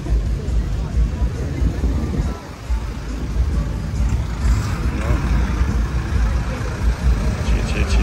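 Busy street-market crowd ambience: people talking all around, music from nearby stalls or bars, and cars and motorbikes moving past, over a steady low rumble.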